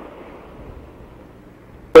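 A pause in a man's speech, filled only by faint steady background hiss with a low hum; his voice comes back loudly right at the end.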